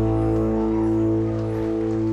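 Live band holding a sustained chord on guitars and keyboard at the close of a carol, ringing steadily and easing down slightly.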